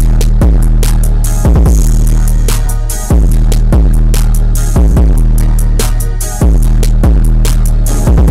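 Instrumental trap beat played on a drum-pad app: long, deep bass notes restart about every second and a half, under fast hi-hat clicks and a snare.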